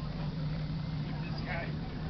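A steady low hum of an engine running, with faint indistinct voices in the background.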